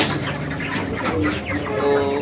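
A flock of broiler chickens clucking and chirping in short, overlapping calls.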